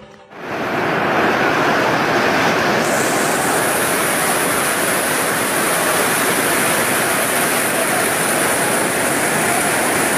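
Heavy downpour drumming steadily and loudly on a tent roof, starting suddenly about half a second in.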